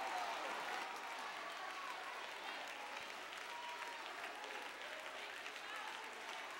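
Church congregation applauding steadily, with faint voices calling out.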